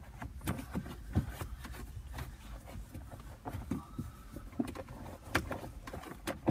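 Microfiber towel rubbing over the plastic centre console around the gear selector, with scattered light taps and knocks of the hand against the trim.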